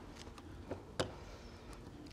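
A hand brayer rolled over fabric on a tacky cutting mat, pressing the fabric down so it won't shift: a faint rolling with two small clicks, the sharper one about a second in.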